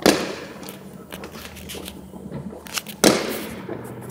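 Two firework bangs about three seconds apart, each trailing off with a short echo, with smaller firecracker pops between them.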